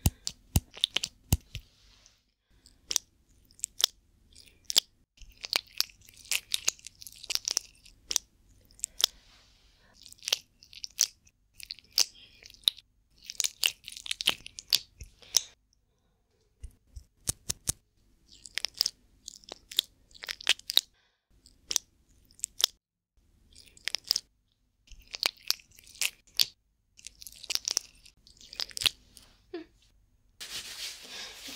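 Close-miked ASMR treatment sounds: hands working cotton and medicine right at the microphone, with irregular sharp clicks and short crackly rubbing bursts.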